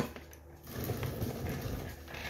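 A click, then irregular rustling and light knocking as the seat is worked free and lifted off a Honda CRF300L dirt bike.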